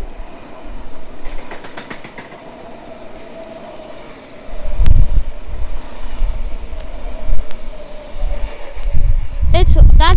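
Sydney Trains V-set double-deck electric intercity train passing through the platform without stopping: a steady whine over a low rumble that grows louder about four and a half seconds in, with scattered clicks of the wheels over the rail joints.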